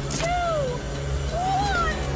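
A voice counting down the last numbers, two drawn-out words about a second apart, over a steady low drone.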